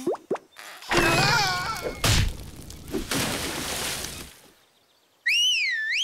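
Cartoon slapstick sound effects as a bent branch springs back: a quick swish and knock, then a long crashing noise with a wavering cry in it. After a short silence, a high warbling whistle comes near the end.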